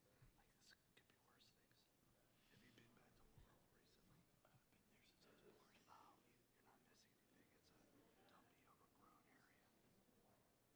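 Near silence with faint, indistinct talking, too low to make out words.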